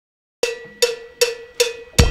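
Count-in for a heavy metal song played on metallic percussion: four evenly spaced ringing strikes, about two and a half a second, starting about half a second in.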